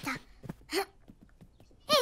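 A few short voice noises from a young cartoon character, brief grunts or murmurs, clustered in the first second, followed by a short lull; speech begins right at the end.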